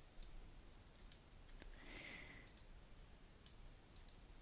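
Faint computer mouse clicks, about half a dozen spread through the seconds, over near silence, with a soft breath about two seconds in.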